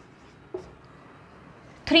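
Faint strokes of a felt-tip marker writing on a whiteboard.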